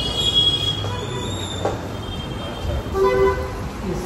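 Street traffic noise with a high-pitched squeal in the first half-second and a short vehicle horn toot about three seconds in.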